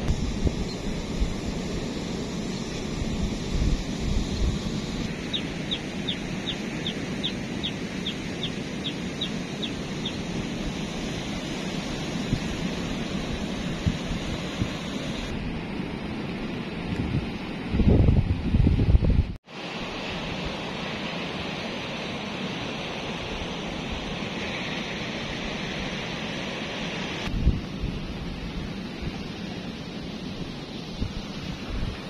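Steady wash of wind and distant sea surf, with wind buffeting the microphone in low rumbles that are loudest in a gust about 18 seconds in. A bird calls in a run of quick high ticks, about two or three a second, from about 5 to 10 seconds.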